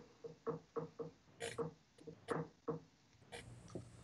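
Faint, quick ticks of tying thread being wound from a bobbin around a fly hook held in a vise, tying in a wire rib: about three short ticks a second, with a soft rustle near the end.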